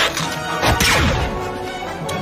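Cartoon fight soundtrack: background music with several punch and smash sound effects.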